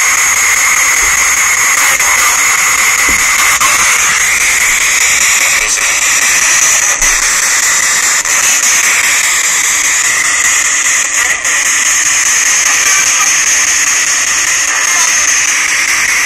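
Ghost box (spirit box) sweeping radio frequencies: a steady, loud hiss of radio static with a few faint clicks.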